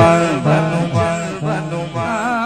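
Live naat recitation: a male voice singing a devotional refrain into a microphone over a steady held drone note.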